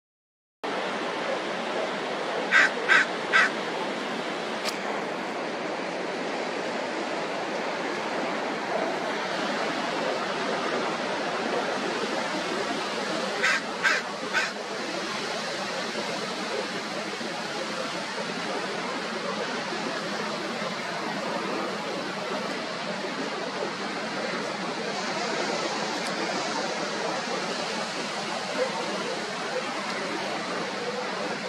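Steady wash of surf, with two runs of three quick, loud barks from sea lions, about two and a half seconds in and again about thirteen seconds in.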